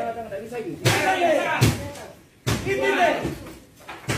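Voices talking or calling out, with a couple of sharp knocks or thuds, one about a second in and one near the middle.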